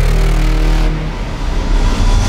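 Logo intro sting of electronic sound design: a loud, deep rumble under a rushing hiss, easing slightly about a second in.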